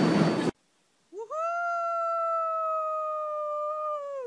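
A single long, high wail. It swoops up at the start, holds a nearly steady pitch for about three seconds, and drops away at the end. Just before it, the noisy sound of a subway car cuts off suddenly about half a second in.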